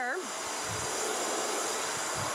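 Bissell ProHeat 2X Revolution Pet Pro carpet cleaner running, a steady motor hiss of its suction.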